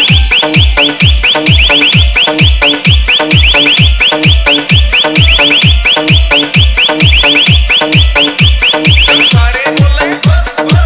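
Indian hard-bass DJ EDM mix: a heavy kick drum with a falling-pitch boom about two and a half times a second, under a fast repeating high synth chirp that rises in pitch like an alarm. Near the end the chirps stop and the track shifts into a new section.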